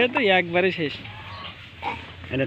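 A person's voice: one drawn-out vocal sound falling in pitch, fading out within the first second, then low background.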